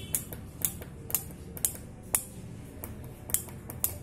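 Small PCB relays on an Arduino-driven step up/down relay board clicking in turn, about two sharp clicks a second, as the board steps from one relay to the next.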